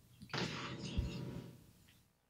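Microphone handling noise: a brief rustle with a soft thump about a second in.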